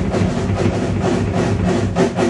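Live jazz band playing an instrumental passage, with drum kit and steady pitched lines underneath and frequent percussive strokes.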